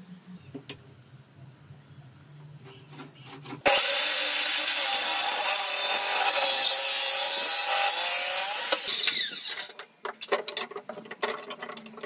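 Circular saw cutting through pine board. It starts abruptly about a third of the way in, runs for about five seconds with a high whine over the cutting noise, then winds down. A scatter of light knocks and clicks follows.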